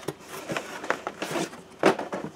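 Carded action figures in plastic blister packs rubbing and scraping against each other and against a cardboard box as they are lifted out and handled. A run of soft scrapes and rustles, with a louder one near the end.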